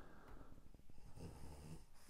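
Faint breath sound with a short snore-like rasp a little past the middle, over quiet room tone and a few faint clicks.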